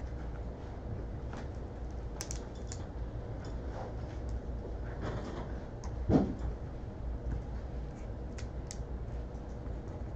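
Scattered light clicks and taps of desk work, from computer mouse clicks and hands on a card box, with one louder knock about six seconds in.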